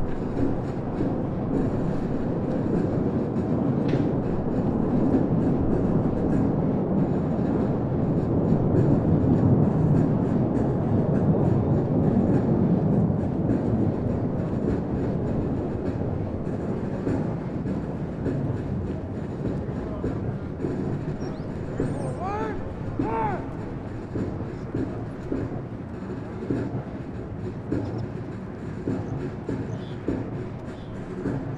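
Many boots marching in step on pavement, a dense, steady tramp from a large formation. A couple of short calls ring out about two-thirds of the way in.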